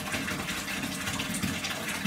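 Steady rush of running water, without breaks.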